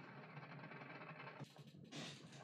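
Faint audio of the anime episode playing: a low, dense wash of soundtrack and effects that dips briefly about one and a half seconds in, then comes back suddenly at the end.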